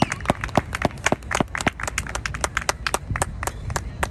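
Spectators clapping close to the microphone: a quick, irregular run of sharp hand claps that thins out near the end.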